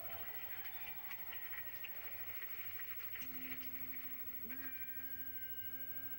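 Sitcom studio audience applauding, heard through a TV speaker, then a steady held musical note with overtones starts about three seconds in as the band's number begins.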